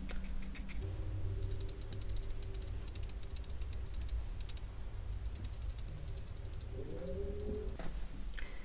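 Small watercolour brush dabbing and flicking on watercolour paper: a quick run of light, scratchy ticks, busiest from about a second to five seconds in, over a faint steady low hum.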